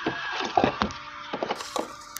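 A run of irregular sharp clicks and knocks, several a second.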